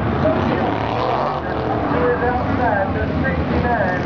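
Dirt late model race cars running around the track in a steady engine rumble, with people talking close by over it.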